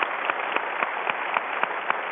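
An audience applauding, a dense patter of many hands clapping.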